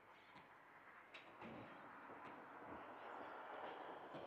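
Faint, distant traffic noise: an even hiss that slowly swells louder, with a few faint ticks.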